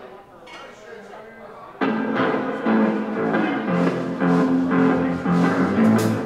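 A live rock band starts a song about two seconds in, coming in all at once with drum kit and guitar after a quieter moment; low bass notes grow stronger about halfway through.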